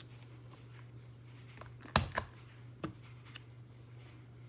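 A few sharp clicks and knocks from a clear acrylic stamp block being pressed onto paper and lifted off a craft mat. The loudest knock comes about two seconds in, over a low steady hum.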